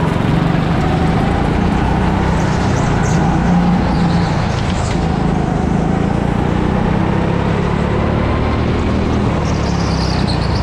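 Go-kart motor running at speed, heard from on board the kart, a steady drone whose pitch drifts up and down through the corners.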